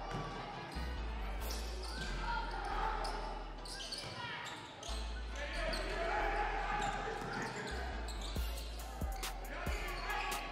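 A basketball bouncing on a hardwood gym floor during live play, with voices calling out across a large, echoing gym. A quick series of sharp bounces comes near the end.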